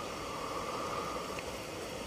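Steady, faint background hiss of open-air ambience picked up by a speech microphone, with a faint hum for most of it.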